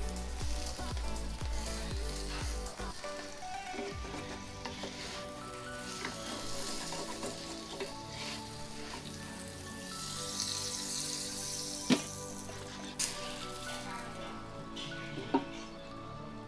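Apam balik pancake batter sizzling in a small pan on a gas burner while a spatula folds the pancake in half. In the second half there are a few sharp knocks of the spatula against the pan as the pancake is lifted out.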